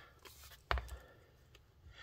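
Plastic model-kit hull being handled: one sharp plastic click about two-thirds of a second in, with faint handling ticks before it.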